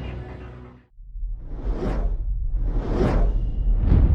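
Closing music fades out within the first second. Then a production-logo sound effect sets in: a deep rumble under three whooshes, each swelling up and dying away, about a second apart.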